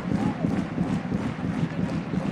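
Football stadium crowd noise, steady and dense, running under the match broadcast.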